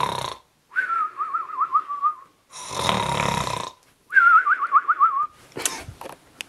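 Cartoon-style snoring, done twice: a rough snore on the in-breath, then a warbling whistle on the out-breath. A sharp click comes near the end.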